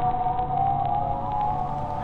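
A held, siren-like tone with a slight waver, over a steady low hum: a drone from a horror trailer's sound design.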